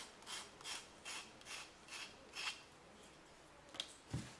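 Emery-board file rasping back and forth along the edge of a wooden craft shape, about eight quick strokes over the first two and a half seconds, sanding the edge smooth. The filing then stops, with a small click near the end.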